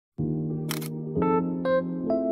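Keyboard intro music, sustained chords that change twice, with a camera shutter click sound effect a little under a second in.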